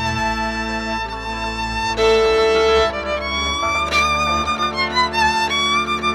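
Hungarian Roma folk song played live on violins over double bass and cimbalom: a violin melody with wide vibrato over sustained bass notes, with one long held note about two seconds in.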